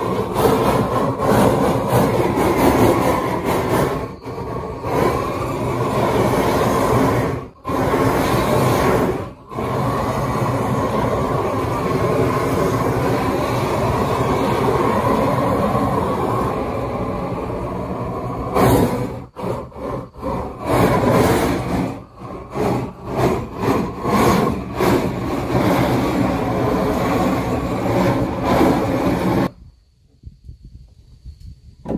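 Propane torch flame burning steadily as it chars wooden boards, with a few brief drops and, in the last third, a choppy run of short stops and starts.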